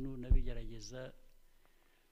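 A man speaking Kinyarwanda, his voice trailing off into a pause about a second in. A short low thump, louder than the voice, comes just after the start.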